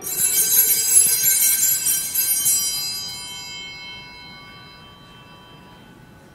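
Hand-held altar bells rung at the consecration of the host: shaken for about two and a half seconds, then left to ring out and fade over the next couple of seconds.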